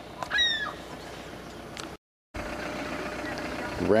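A single short bird call, falling in pitch, about half a second in, over steady outdoor hiss. The sound cuts out briefly a little past halfway, then a steadier, louder outdoor noise runs on.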